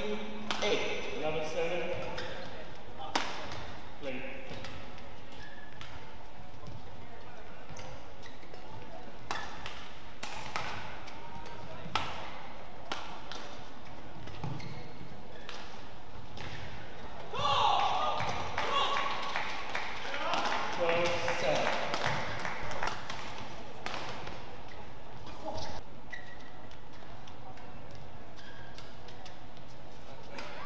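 Badminton rackets striking a shuttlecock in a rally: sharp cracks a second or more apart, in a large hall. About seventeen seconds in, a few seconds of voices come in.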